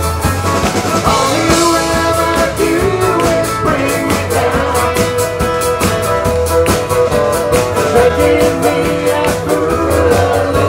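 Live country band playing a song over a steady drum beat, with acoustic guitars, accordion and fiddle.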